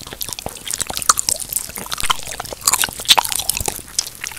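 Close-miked biting and chewing of honey jelly: many sharp crackles and crunches of its sugary crust, mixed with wet, squishy sounds of the soft jelly.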